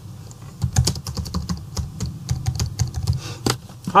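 Computer keyboard typing: a quick, irregular run of key clicks as a short phrase is typed.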